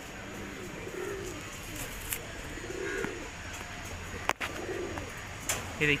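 Domestic pigeons cooing: three low, drawn-out coos, with a single sharp click a little after four seconds in.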